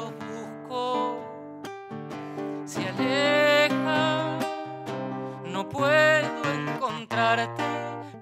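Acoustic guitar playing a folk samba accompaniment, with a male voice singing a wavering melodic line over it from about three seconds in and again around six seconds.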